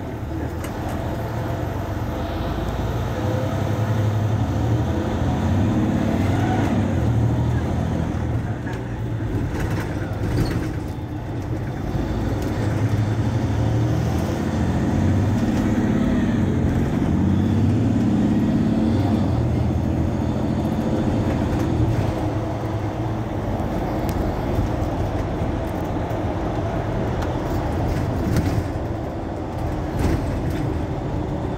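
Mercedes-Benz Citaro C2 city bus's diesel engine running while the bus stands still: a steady deep hum that swells and eases a few times.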